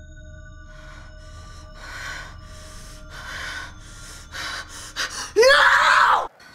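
A woman panting and gasping in fear, her breaths coming quicker and louder, breaking into a loud scream near the end. A faint steady drone of film score sits underneath.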